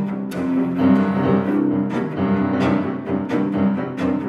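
Cello and grand piano freely improvising together: held bowed cello notes under a run of struck piano notes and chords.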